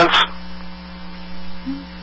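Steady electrical mains hum on a telephone-call recording, a low, even drone with no break.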